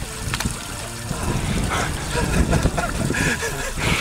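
A man's voice, brief murmurs and laughter, over a small mountain stream trickling and a steady low rumble of wind on the microphone.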